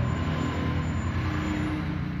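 A motor running steadily: a low, pulsing engine hum.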